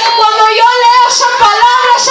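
A woman singing loudly in a high voice into a microphone, with long held notes that waver in pitch.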